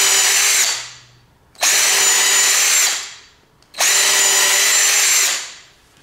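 Bauer 20V cordless drill with a titanium-coated twist bit, plunge-drilling into a solid oak block: three short bursts of motor whine about two seconds apart, each cutting in abruptly and winding down. The drilling is done in pecks, the bit backed out between plunges to clear the chips that otherwise cake in the hole and overheat the bit.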